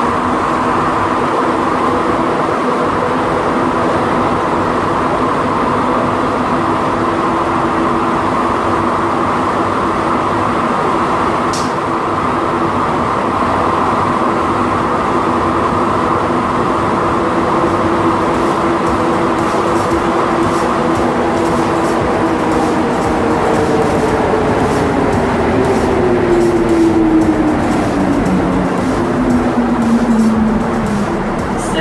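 Montreal Metro Azur (MPM-10) rubber-tyred train heard from inside the car, running between stations with a steady rumble and the whine of its traction motors. Over the last ten seconds the whine falls in pitch as the train slows for the next station, with one sharp click about eleven seconds in.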